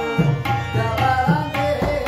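Tabla and harmonium playing together: a steady tabla rhythm with deep, booming bass-drum strokes under the harmonium's sustained reed melody.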